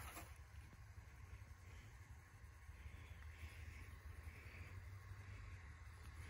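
Near silence outdoors: only a faint, steady low rumble, with no distinct event.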